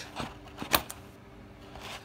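Hand-held metal pattern notcher snapping shut on the edge of manila pattern paper, cutting a quarter-inch notch: one sharp click about three-quarters of a second in, with fainter clicks just before it.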